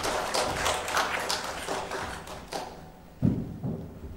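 A congregation applauding with many overlapping claps that thin out and stop after about two and a half seconds, followed by a few dull thumps near the end.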